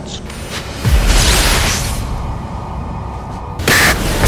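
Horror film score with sound-effect hits: a deep boom about a second in that settles into a low rumble, then a short, sharp hit near the end.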